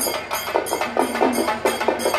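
Drums played in a fast, even beat, about four strokes a second.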